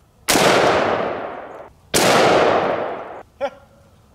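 Two rifle shots from an AR-15, about a second and a half apart. Each loud crack is followed by a long echo that fades over more than a second.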